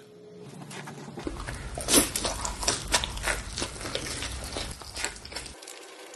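A person biting and chewing a sauce-covered slice of pepperoni pizza: a run of soft, irregular clicks and smacks over a low steady hum, loudest about two seconds in.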